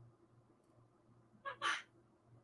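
A pet parrot gives a short call in two quick parts, about one and a half seconds in.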